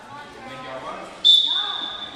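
A referee's whistle blows one long, steady blast starting a little past halfway, with the players set in ready position: the signal for the serve.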